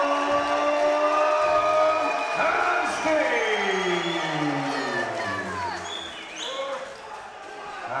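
A ring announcer's voice over a hall's PA, drawing out a fighter's name as one long held call that then slides slowly down in pitch, with a crowd cheering underneath.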